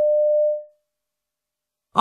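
A single electronic beep, a steady mid-pitched pure tone about half a second long that fades out. It is the signal tone that marks the start of each recorded piece in a listening exam.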